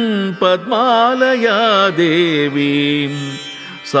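Carnatic-style devotional singing of a Sanskrit verse: one voice draws out a syllable in wavering, ornamented glides with no clear words, then settles on a long steady note and dips briefly near the end.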